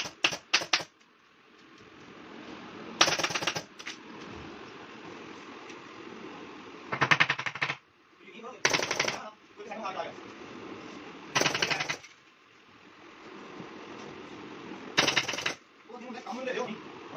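Pneumatic upholstery staple gun firing in quick bursts of shots, about five bursts a few seconds apart, driving staples through rubber webbing into a wooden sofa frame. A steady low noise fills the gaps between bursts.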